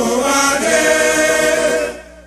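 A choir singing a song in Sranan Tongo in held, harmonised chords. The chord moves to a higher one about half a second in, and the phrase ends right at the close.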